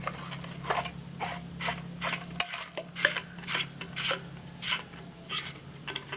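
Brass check valve being screwed by hand onto a PVC threaded socket: a string of short, sharp clicks and scrapes, about three a second, from the metal and plastic threads and fittings knocking together.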